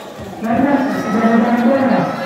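A man's voice in a long, drawn-out call, starting about half a second in and wavering in pitch for about a second and a half.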